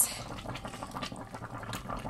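Chicken broth simmering in an open pressure-cooker pot, a steady bubbling noise with small irregular pops.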